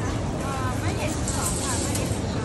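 Voices talking, not close to the microphone, over a steady low hum and hiss of background noise.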